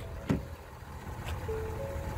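Door latch of a 2018 Ford F-350 pickup clicking as the door is opened: a sharp click just after the start and a fainter one about a second later, over steady outdoor background noise.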